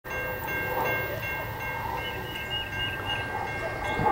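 Grade-crossing warning bell ringing steadily over a low rumble: the crossing has been activated by an approaching train.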